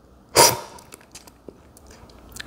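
A single loud slurp of coffee sucked off a cupping spoon, with a few faint clicks after it. It is a sip that went wrong: a "bad sip".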